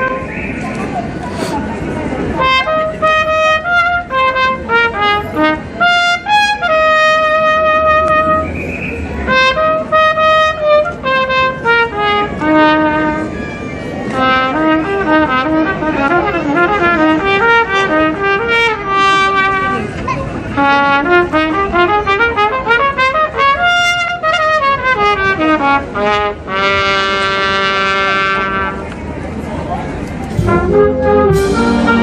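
Brass band playing a tune, a trumpet carrying the melody over the rest of the band, with a long held note near the end.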